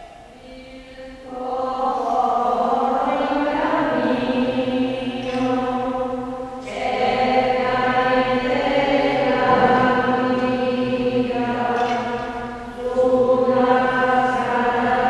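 Voices singing a slow Communion hymn in long held phrases, with a brief pause between phrases about six and a half seconds in and again near the end.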